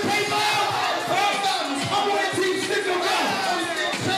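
A crowd shouting and chanting along over a loud hip-hop beat, many voices at once.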